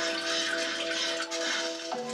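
Soft background music of held notes, with a hiss of running water over it that stops about a second in.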